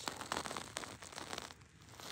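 Handling noise: light crackling and rustling as hands shift a sandstone slab close to the microphone, a quick run of small clicks that dies down near the end.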